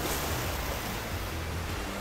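Gentle surf breaking and washing over the shallows, a steady, even hiss of water.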